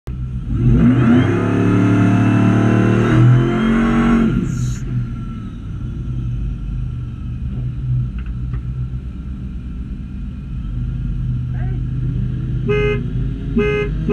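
Whipple-supercharged V8 of a Ford SVT Lightning pickup accelerating hard, its pitch climbing with a shift about three seconds in, then backing off to a steadier cruise. Two short horn toots come near the end.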